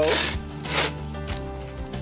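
Zipper on a Dowco pontoon boat cover being pulled open in two short rasping strokes, over steady background music.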